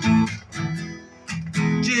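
Acoustic guitar strummed, a few chord strokes ringing, with a brief quieter stretch about a second in before the strumming picks up again.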